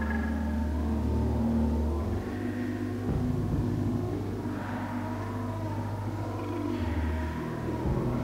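Minimal synth music from a 1986 home-taped cassette: a deep, rumbling synth bass drone that steps to a new pitch about two seconds in and again near the end, under layered held tones.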